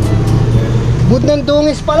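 A steady low hum runs throughout, with a man's voice speaking briefly over it in the second half.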